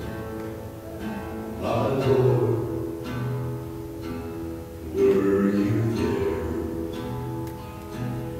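Acoustic guitar played live, strummed chords left ringing, with fresh strums about two seconds in and again about five seconds in.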